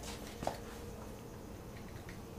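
A car wheel and tyre being handled onto a floor scale in a quiet garage: one soft knock about half a second in over a low, steady background.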